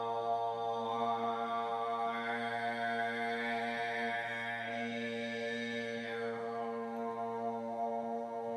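A vocal sextet sings a sustained chord in overtone singing, the drone built on a low B-flat. Over the steady chord, a band of vowel-shaped overtones sweeps upward during the first few seconds and sinks back down about six seconds in.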